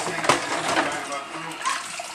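Water running at a kitchen sink, with two sharp clinks of dishes near the start and voices faintly in the background.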